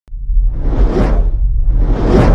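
Logo-intro sound effects: two whooshes that swell and fade, peaking about one second in and again at the end, over a steady deep rumble.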